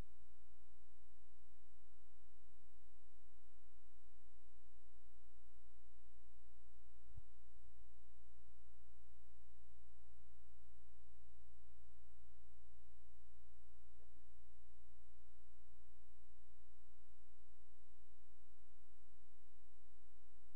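Steady electrical hum: a low mains buzz with a steady tone above it, unchanging throughout.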